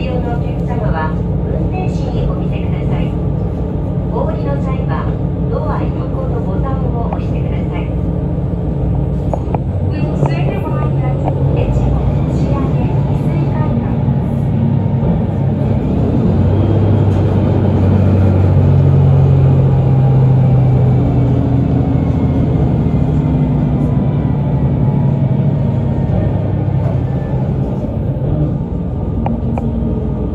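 ET122 diesel railcar heard from inside, running along the line with a steady rumble of engine and wheels on rail. The engine note swells louder about halfway through and then eases. Indistinct voices talk during the first ten seconds.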